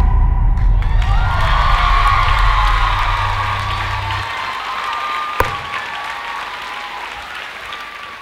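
Audience applauding and cheering as a dance piece ends, with voices calling out over the clapping. The music's last low note holds under it and stops about four seconds in, a single sharp knock comes a little after halfway, and the applause fades away.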